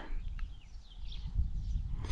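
Quiet outdoor background: a low rumble with a few faint bird chirps in the first half.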